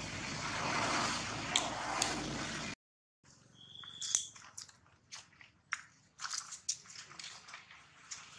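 Steady background hiss at first; after a brief dropout about three seconds in, a string of light crunches and crackles of footsteps on dry leaves and gravel, with one short high whistle-like tone just before they begin.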